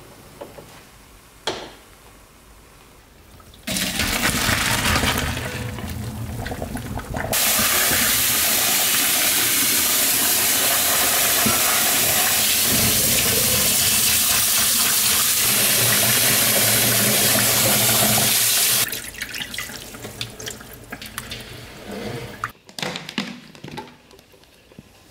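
Kitchen tap running hard into a stainless steel sink, pouring over cooked thin noodles in a steel colander as they are rinsed. The water starts about four seconds in, grows louder a few seconds later, and stops shortly before the end, followed by scattered clattering.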